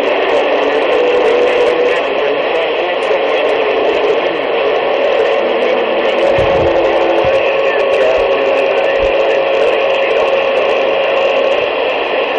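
CB radio receiver hissing with steady band static while tuned to channel 19 (27.185 MHz), with faint whistling carrier tones wavering in the noise.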